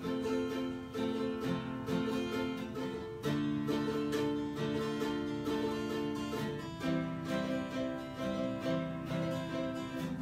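Acoustic guitar strummed in a steady chord pattern with no singing, the chord changing about three seconds in and again near seven seconds.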